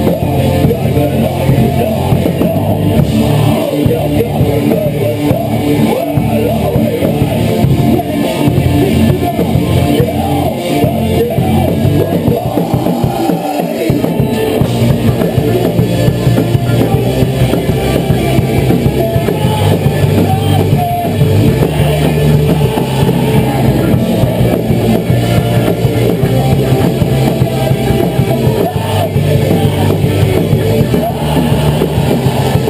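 A heavy rock band playing live: distorted electric guitars, bass guitar and drum kit, loud and continuous.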